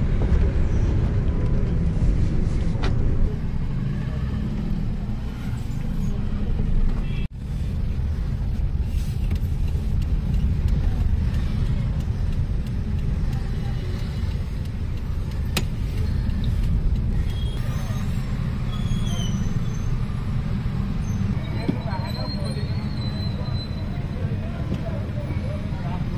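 Steady low rumble of a car driving, engine and road noise heard from inside the cabin, with a brief drop-out about seven seconds in.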